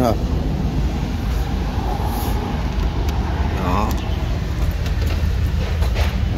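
A motor vehicle engine idling: a steady, even low hum.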